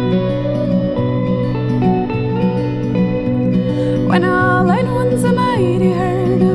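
Instrumental passage of a country song: a steel-string acoustic guitar strumming chords under a semi-hollow electric guitar playing a picked lead line. About four seconds in, a higher melody line that bends and wavers comes in over them.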